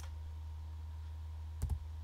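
Steady low electrical hum, with a faint click at the start and a sharper, louder click near the end.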